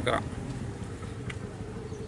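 A steady low droning hum under a pause in a man's speech, with a faint click a little past halfway.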